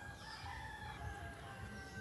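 A rooster crowing: one long, drawn-out crow with small birds chirping.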